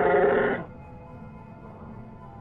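Chewbacca's Wookiee cry, a loud quavering howl of pain, cuts off abruptly about half a second in. Soft ambient music with long held tones follows.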